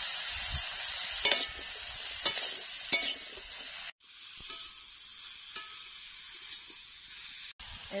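Cubed potato and aubergine sizzling as they fry in an aluminium karahi, stirred with a metal spatula that clicks and scrapes against the pan a few times in the first three seconds. About four seconds in the sizzling drops quieter.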